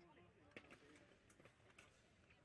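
Near silence in the fencing hall, broken by a few faint, sharp clicks and taps as two sabre fencers move against each other on the piste. Faint voices are in the background.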